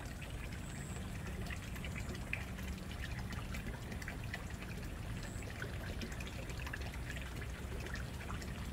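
Steady trickling of running water over a low constant hum, with a few faint chirps.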